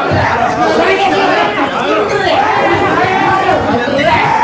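Several men shouting over one another at once, a loud tangle of raised voices from a brawl being pulled apart.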